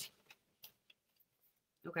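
A few faint, short clicks and taps, about five spread over a second and a half, as a printed paper sheet is picked up and handled.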